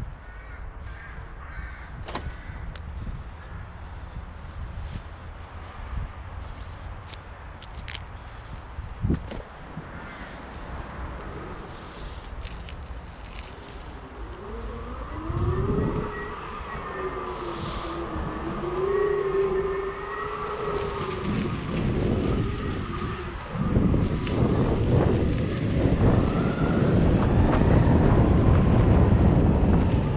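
An electric mountainboard's motors whine as it rides off, the pitch rising and falling with speed for several seconds. In the last few seconds, wind noise on the microphone and the rumble of tyres on a dirt path take over and grow louder. Before it sets off, there are scattered clicks and knocks.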